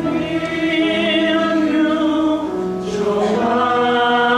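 Chamber choir singing sustained chords in full harmony, entering strongly on a new phrase at the start, with a brief hissed consonant about three seconds in.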